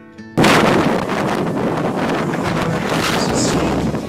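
Quiet acoustic guitar music, cut off about half a second in by loud, rough rushing of wind buffeting a phone's microphone, which runs on steadily.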